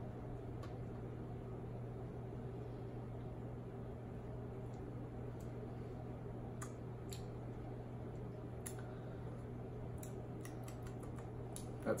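Quiet room tone: a steady low hum with a few faint scattered clicks.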